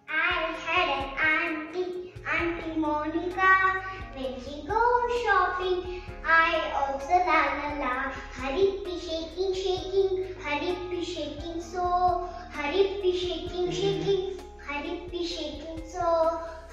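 A young girl singing a song in short phrases, with low accompaniment notes underneath.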